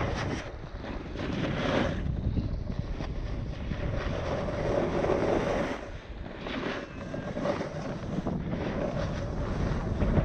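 Wind buffeting the microphone over the scrape and hiss of edges sliding across packed, groomed snow during a fast downhill run, swelling and easing with the turns.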